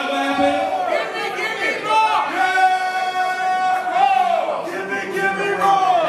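A man's amplified voice chanting on a microphone in long, drawn-out notes, over crowd noise.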